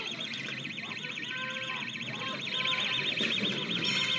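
An electronic alarm siren warbling rapidly and steadily at a high pitch, with distant shouting voices underneath.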